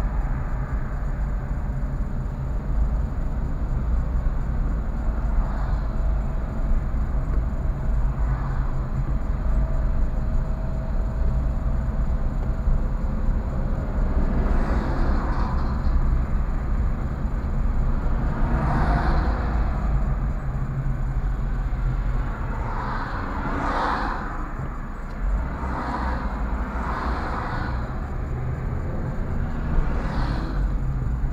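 Road and engine noise inside a moving car's cabin: a steady low rumble while driving in slow traffic, with a few brief swells of rushing noise in the second half.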